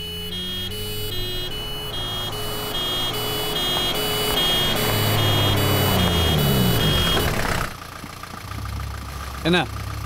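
Rhythmic electronic beeping in two alternating pitches, about two pulses a second, over a rising swell and low rumble, cut off suddenly about three-quarters of the way through. A vehicle engine then idles with a steady low hum.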